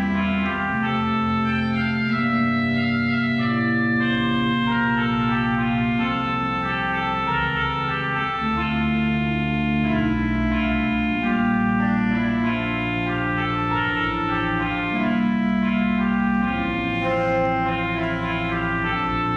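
Church organ playing slow, sustained chords, with the held notes and bass changing every second or two.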